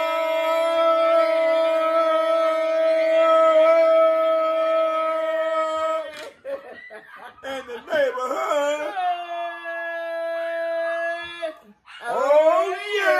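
A voice singing one long held note for about six seconds, then a few seconds of wavering, broken singing, then a second held note of about two and a half seconds that cuts off just before the end.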